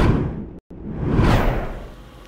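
Two whoosh sound effects from a news transition stinger. The first fades away, it cuts to silence for a moment about half a second in, then a second whoosh swells and dies away.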